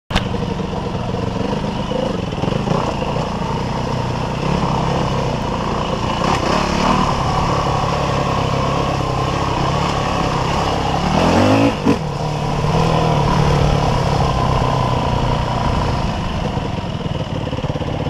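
Off-road dirt bike engine running as it is ridden over a rough gravel trail, revs rising and falling with the throttle. About two-thirds of the way in, the revs climb quickly, then settle back.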